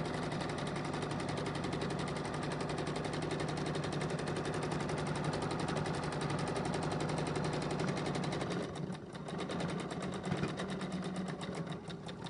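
Small, inexpensive domestic sewing machine stitching fast and steadily in free-motion zigzag, threaded with a heavy 12-weight and a 30-weight thread together. About three-quarters of the way through it slows and briefly dips, then picks up again less evenly.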